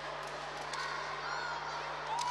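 Steady background hubbub of children's voices in a school sports hall, with a few high calls rising out of it.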